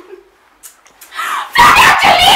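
A woman crying, breaking into loud wailing about a second and a half in.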